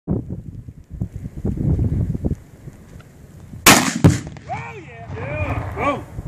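A 7mm-08 rifle shot followed about a third of a second later by the boom of a Tannerite target exploding, a little past halfway through. A person's voice follows, rising and falling in whoops or laughter.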